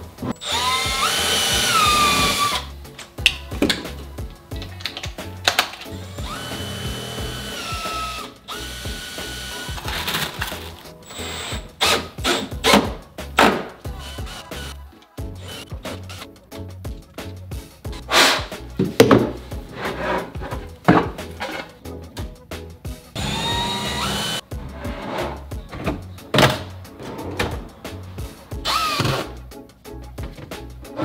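Milwaukee cordless drill driving screws into metal drawer runners in several short runs, each a motor whine that rises and then holds. Between the runs come sharp clicks and knocks of the runners being handled, over background music.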